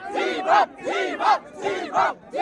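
A crowd of voices shouting together in short, rhythmic bursts, a chant repeated about twice a second.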